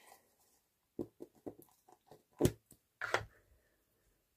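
Handling of a plastic-cased Memento ink pad: a handful of light clicks and taps as the pad is brought out, opened and set onto a clear stamp on an acrylic block. The loudest tap comes about two and a half seconds in.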